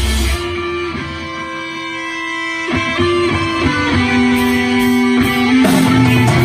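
Live rock band playing with two electric guitars: about half a second in the deep low end drops away, leaving the guitars ringing out sustained notes and chords. The playing builds again, with strikes across the range coming back near the end.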